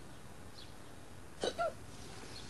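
A single short hiccup-like vocal sound about one and a half seconds in: a sudden catch followed by a brief bent tone, over faint room tone.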